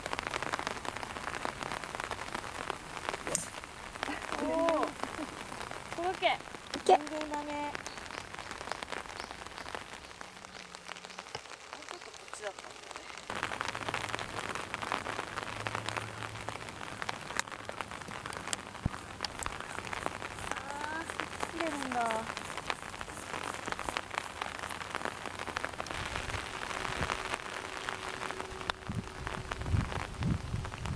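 Steady rain falling, a constant hiss made of many tiny drop clicks, with one sharp click about seven seconds in.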